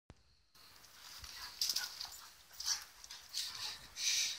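Dogs play-fighting and vocalising in a few short, high-pitched bursts.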